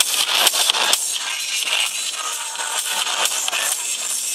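Loud electronic dance music from a DJ over a club sound system, recorded from the crowd so it sounds thin, with the bass missing. The steady beat drops out about a second in, leaving a sustained wash of synths.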